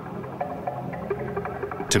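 Steady low electronic drone with faint held tones above it: an ambient background music bed.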